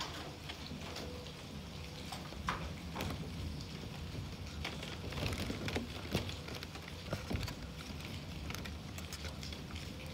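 Close handling sounds: soft rustling with irregular light clicks and scratches as a hand strokes young gray squirrels and their claws shift on a cotton sleeve. A few sharper clicks come about five to seven seconds in.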